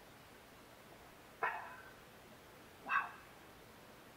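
A dog barking twice, two short barks about a second and a half apart.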